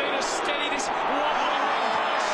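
Steady noise of a large stadium crowd at an Australian rules football match, with a broadcast commentator's voice faintly beneath it.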